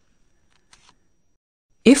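Near silence, broken by one faint, short tick a little under a second in; a narrating voice begins just before the end.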